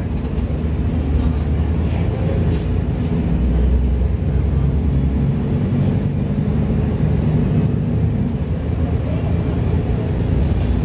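Mercedes-Benz O-500U city bus diesel engine running, a steady low drone whose pitch shifts a little as the bus drives.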